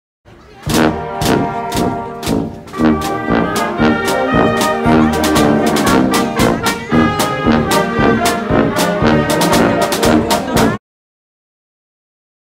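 Marching band playing: brass and saxophones over a marching drum beat of about two strikes a second. The music cuts off suddenly near the end.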